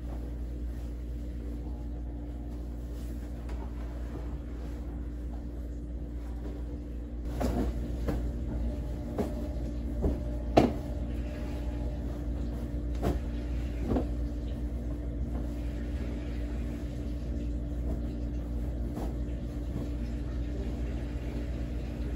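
Washing machine running with a steady low hum. From about seven seconds in come the rustle and soft knocks of bedding and pillows being handled, with a few short clicks.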